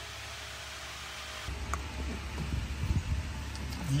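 Faint steady hiss, then about a second and a half in a low rumble with light rustling and a few soft clicks as hands feed a bundle of wiring harness cables.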